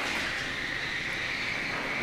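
Spinning weapons of 3 lb combat robots running at speed, a steady high whine over a broad hiss, with no impact.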